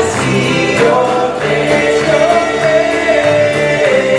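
Live gospel-rock band playing, with electric and acoustic guitars, bass and drums, and a voice singing over them that holds one long wavering note through the second half.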